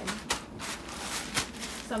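Plastic zip-top bag rustling and crinkling as it is shaken with crushed cracker crumbs and pieces of fish inside, breading the fish.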